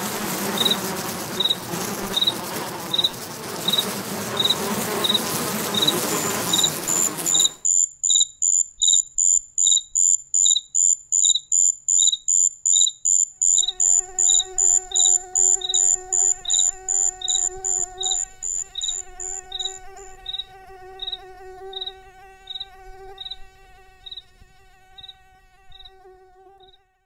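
Cricket chirping steadily, about one and a half high chirps a second. For the first seven seconds it is over a loud hiss of background noise that cuts off suddenly. From about halfway a steady mosquito whine joins, and both fade toward the end.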